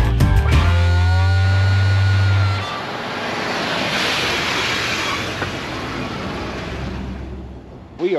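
Background music ends about a third of the way in. A pickup truck then drives over a low camera on a brick-paved road: its tyre noise on the bricks swells and fades away.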